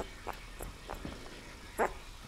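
Nine-day-old bull terrier puppy giving short squeaks and whimpers, about four in two seconds, the loudest near the end.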